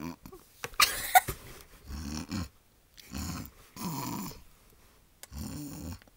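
A girl making animal-like noises with her voice, not words: about five short bursts with brief pauses between, the loudest and sharpest about a second in.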